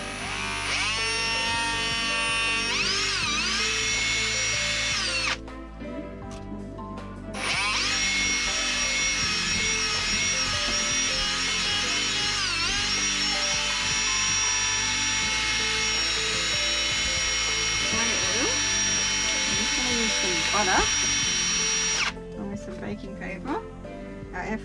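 Cordless drill fitted with a beater attachment whirring as it mixes cake batter in a steel bowl. It runs in two spells: about five seconds, a short stop, then about fifteen seconds, stopping a couple of seconds before the end. Its pitch dips briefly twice as the speed changes.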